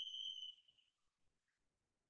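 Near silence on a video-call line. The tail of a spoken word fades out in the first half second, leaving a thin high steady tone that dies away about half a second in.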